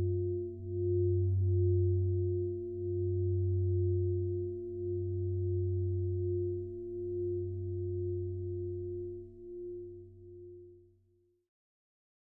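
Sustained electronic drone chord of a few held low tones, swelling and dipping about every two seconds: the closing chord of a pop song, fading out to silence near the end.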